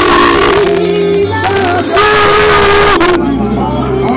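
A woman singing gospel through a church PA with live band accompaniment: long held sung notes over steady bass and keyboard. Two loud, bright washes of noise come in the first second and again about two seconds in.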